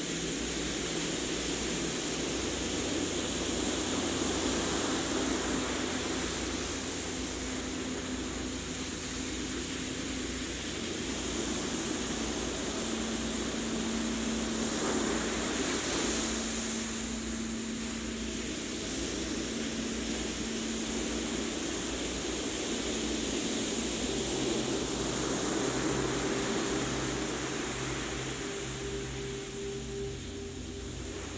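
Soft ambient meditation music: long held low tones that shift every few seconds over a steady wash of noise that swells and fades about every ten seconds, like surf.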